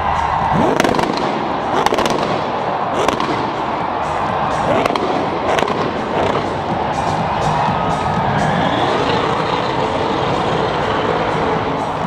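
Drift car engine revving, with several sharp bangs from the exhaust in the first six seconds, heard against background music and crowd noise.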